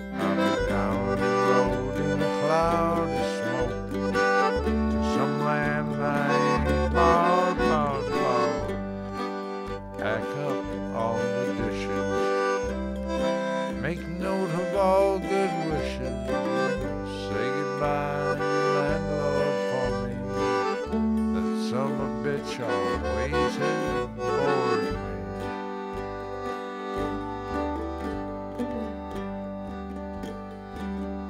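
A red Roland digital piano accordion and an acoustic guitar playing a country-style song together, with singing in several stretches over a steady accordion bass line. The music gets a little quieter over the last few seconds.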